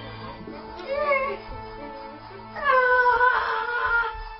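Background music with two high, meow-like sliding cries over it: a short one about a second in and a longer, louder one that falls and then holds near the end.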